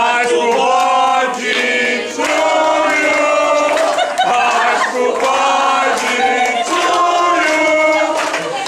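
A group of people singing together, several voices holding long notes.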